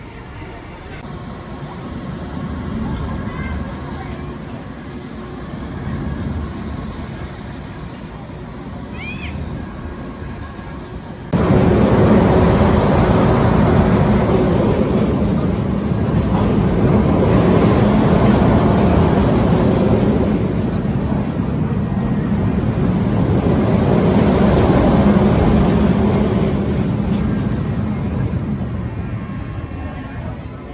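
Amusement-park ride sound: at first a moderate mix of voices and ride noise around a turning swing carousel. About eleven seconds in it jumps suddenly to a much louder steady mechanical hum with noise. This swells and fades every several seconds as a looping thrill ride runs through its cycle.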